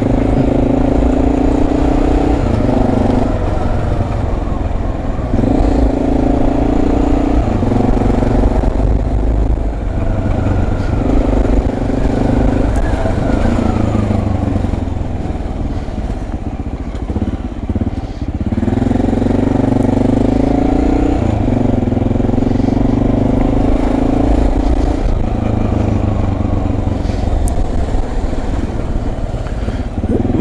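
Motorcycle engine pulling through city traffic. The revs climb in each gear and drop back at each shift. About halfway through it eases off to a lower, rougher note for a couple of seconds, then picks up through the gears again.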